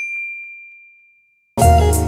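A single bell-like "ding" sound effect, one clear high tone that strikes sharply and fades away over about a second, set in a clean cut of silence in the background music. Guitar-led music comes back in near the end.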